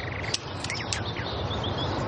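Outdoor ambience: a steady background hiss with a few short high bird chirps.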